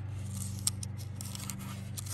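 Fingers handling a small plastic warning tag held on by a cable tie, making a few short clicks and scratches, over a steady low hum.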